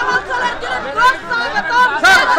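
A crowd of marchers shouting slogans, with many voices overlapping.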